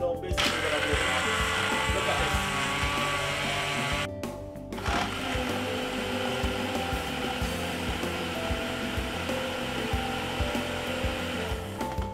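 Single-serve personal blender crushing ice and fruit into a smoothie: it runs for about four seconds, stops briefly, then runs again for about seven seconds.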